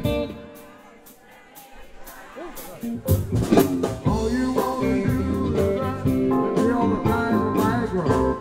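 Live band with a male singer and a hollow-body electric guitar playing blues-rock; the music falls to a quiet break at the start, and about three seconds in the full band and the vocal come back in loudly.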